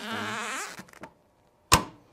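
Clamshell heat press being pulled shut, its upper platen locking down with a single sharp clack about one and a half seconds in. Before it, a man's drawn-out voice.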